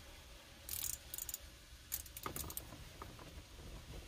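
Faint, scattered clicks and light metallic rattles of hand tools and loose bolts being worked at a car's shifter mount, in a few short bursts.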